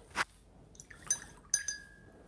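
Two light clinks of glass about half a second apart, the second ringing briefly: a paintbrush tapped against the glass rinse-water jar.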